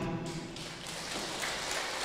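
A pause in a man's speech. His last word fades briefly in the room's echo, then only a faint, steady background noise remains.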